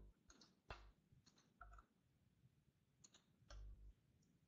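Near silence: room tone with a few faint clicks scattered through it, and a brief low hum near the end.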